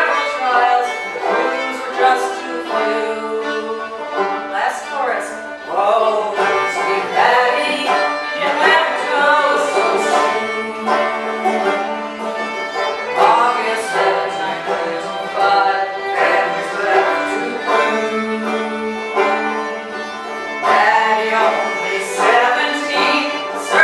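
Banjo and fiddle playing an old-time folk ballad tune together in an instrumental passage, the fiddle sliding between notes over the banjo's picking.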